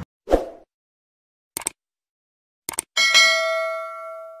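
Subscribe-button outro sound effects: a short soft thump, two sharp mouse-style clicks about a second apart, then a bright bell ding about three seconds in that keeps ringing.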